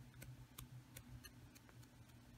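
Near silence with faint, irregular light ticks a few times a second as a makeup sponge loaded with acrylic paint is dabbed onto a vinyl stencil on a painted board, over a low steady hum.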